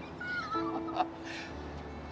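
Background music: held low notes under a thin high line that slides and steps downward in the first second, with a short click about a second in.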